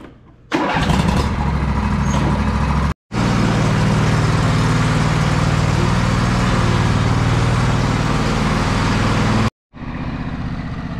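John Deere L118 riding mower's 20 hp V-twin engine starting about half a second in, on a new battery after two years in storage, then running steadily.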